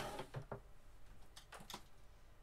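A few light clicks and taps of craft supplies being handled and set down on a desk: a stamp ink pad and a clear acrylic stamp block. Two clicks come about half a second in, and a quick cluster of small ticks follows near the end.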